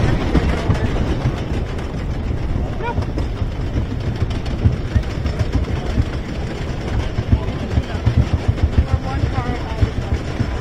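Wooden roller coaster train being hauled up the lift hill by its chain: a steady low rumble with dense, irregular clattering and clacking from the chain and track. Faint voices of riders are heard now and then.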